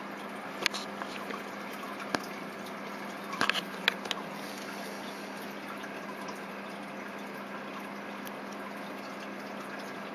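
Quiet room tone with a steady low hum and hiss, broken by a few small clicks and taps in the first four seconds as a metal-bracelet wristwatch is handled.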